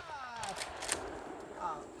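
A few short, sharp metallic clicks of a Winchester Model 94's lever action being worked between shots. Over them, a man's voice gives a drawn-out falling exclamation, then a short 'uh' near the end.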